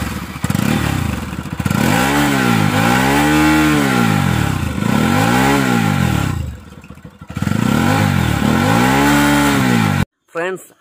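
Bajaj Pulsar NS200's single-cylinder engine revved again and again through its underbelly exhaust, the pitch rising and falling with each throttle blip. Its level drops briefly about two-thirds of the way through before the final rev.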